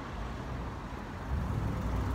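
Road traffic: a car's engine and tyres rumbling, the rumble swelling about two-thirds of the way in as a vehicle passes close.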